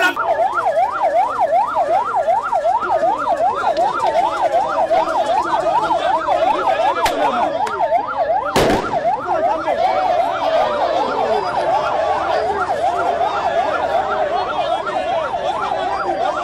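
Electronic siren on its yelp setting, sweeping up and down fast, about four times a second, with a slower wailing tone under it in the second half. A single sharp knock comes about halfway through.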